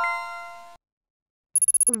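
Bright electronic chime marking the correct quiz answer, several bell-like tones struck together and fading over about three quarters of a second. Near the end comes a quick run of short, high-pitched electronic ticks.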